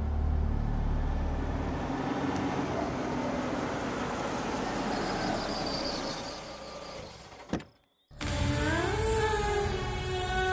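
A car driving up and pulling to a stop, its engine and tyre noise steady and then fading out. A single sharp click comes near the end, followed by a brief dropout, and then background music starts.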